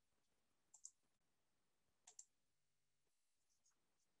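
Near silence broken by two faint computer mouse double-clicks, a little over a second apart.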